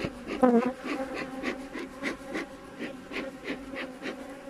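Honeybees buzzing around a hive in a steady hum, with a bee's pitch bending as it flies close past about half a second in. A series of light clicks runs through the hum.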